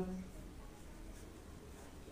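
Faint strokes of a small paintbrush spreading thick paint over paper, after a spoken word trails off at the very start.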